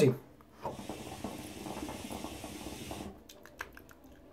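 Hookah water bubbling steadily as smoke is drawn through the hose, starting about half a second in and stopping after about two and a half seconds, followed by a few faint clicks.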